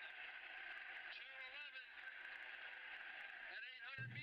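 Faint, distant voices over a steady low hiss.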